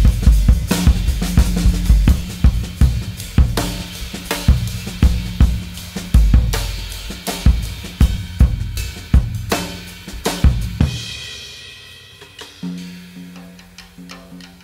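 Solo jazz drum kit improvisation: rapid snare, bass drum, hi-hat and cymbal strokes in dense, loud flurries. The playing thins out and drops in level about eleven seconds in, leaving sparser, quieter strokes with a low ringing tone.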